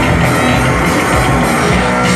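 A live rock band playing loudly, with electric guitars and a drum kit.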